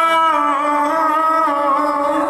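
A man's voice singing Urdu verse in a long held note that steps down slightly and wavers about a third of a second in, in the sung tarannum style of mushaira recitation.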